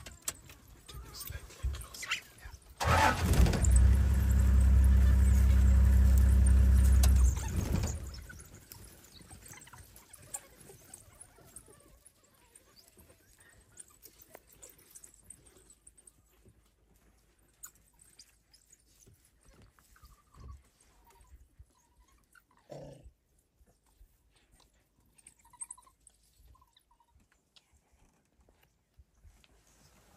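A vehicle engine runs for about four and a half seconds, starting about three seconds in and cutting off near the eighth second, the loudest sound in the stretch. Faint short sounds follow.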